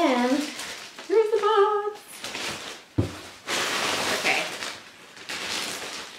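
Packaging handled while unboxing: a sharp knock about halfway, then a couple of seconds of crinkly rustling from the paper and plastic wrapping.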